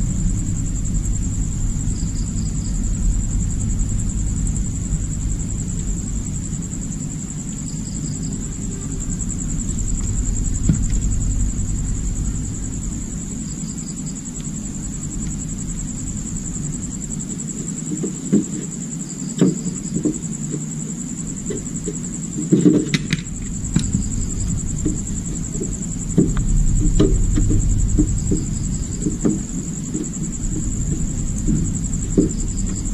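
Steady low hum with a constant high-pitched whine behind it. From about 18 seconds in there is a series of light knocks and taps, loudest a little after the middle, as the scooter's plastic battery casing is handled.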